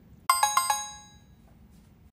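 A bright bell-like chime sound effect: a quick run of about four ringing notes a third of a second in, fading out over about a second. It is an on-screen cue that a quiz question is appearing.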